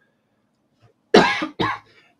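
A man coughs twice in quick succession, about a second in, after a moment of silence.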